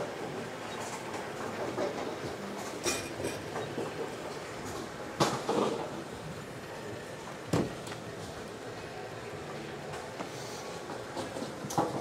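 Bowling alley ambience: a steady rumble of bowling balls rolling on the lanes and pinsetter machinery running. Sharp clatters of pins or balls sound about three seconds in, about five seconds in and again a little past halfway.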